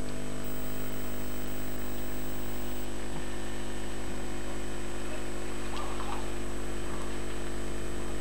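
A steady low hum with an even hiss, unchanging throughout, and a brief faint higher sound about six seconds in.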